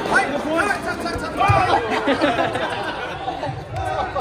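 Several people talking at once in a large gym hall: overlapping, indistinct chatter with no single clear voice.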